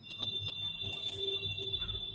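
A steady high-pitched tone that starts suddenly and holds at one pitch, with a fainter lower hum coming and going beneath it.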